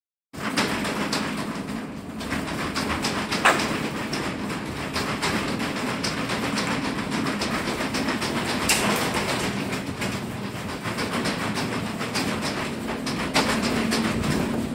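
Inside the cargo box of a moving box truck: a steady rumble with frequent rattling clicks and knocks from the truck body and load, and a sharper knock about three and a half seconds in.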